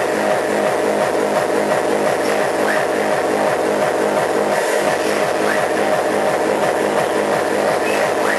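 Loud hard techno played over a club sound system, driven by a fast, steady four-on-the-floor kick drum under a dense, noisy upper layer.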